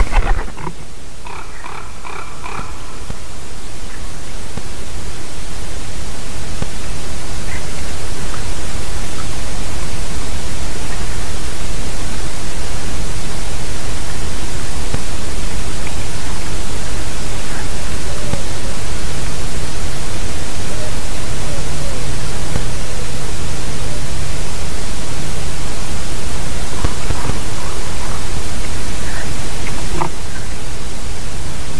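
Steady loud rushing noise of wind on a treetop nest camera's microphone, swelling over the first several seconds. At the very start there is a short loud burst as a wood pigeon takes off from the top branch, then a few brief high bird calls.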